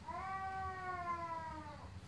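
A faint, long drawn-out animal cry in the background: a single call of nearly two seconds at a fairly steady pitch that rises a little at first and sags and fades near the end.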